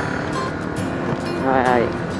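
Steady wind rush and engine noise of a motorcycle being ridden along a wet road, with a short exclaimed "ay, ay" near the end.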